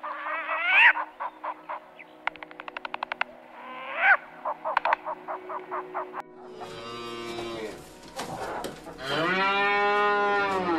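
An eagle-owl calls in a run of short rhythmic calls, with two loud rising screeches, one about a second in and one about four seconds in, and a fast run of clicks between them. In the last seconds a cow moos, a short low call at about seven seconds and then a long drawn-out one near the end.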